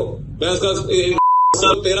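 A censor bleep: one steady pure tone that replaces a man's angry speech for about a third of a second just past the middle, masking an abusive word.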